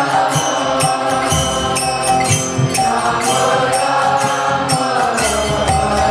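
Devotional kirtan chanting: voices singing a mantra over a held harmonium drone, with hand cymbals striking a steady beat and a drum thumping underneath.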